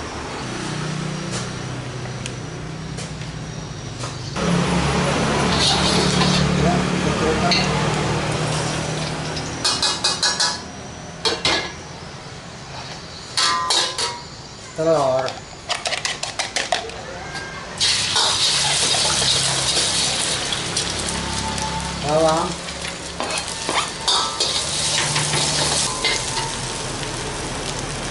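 Shallots and egg sizzling as they fry in oil in a steel wok. About four seconds in the sizzle starts, and it turns loud again around eighteen seconds in. In between, a metal ladle clatters and scrapes against the wok in a run of sharp knocks.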